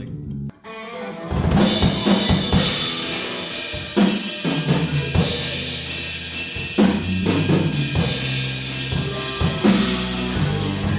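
Band playing together: a drum kit, electric guitar and bass come in about a second in and carry on with a steady groove, with sharp drum hits throughout.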